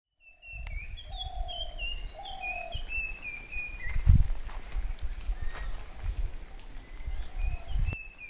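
Birds calling: a quick run of short whistled notes, each stepping down in pitch, with lower drawn-out notes beneath, and the calls coming again near the end. A low rumble runs underneath, with a low thump about four seconds in.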